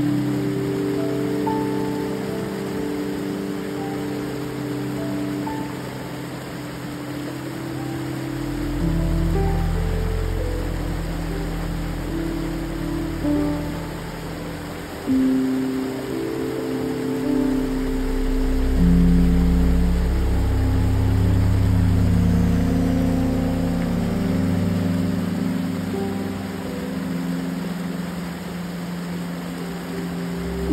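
Slow ambient music of long held notes and shifting chords, with a deep bass that comes in about eight seconds in, over the steady rush of a small creek cascade spilling over a rock ledge.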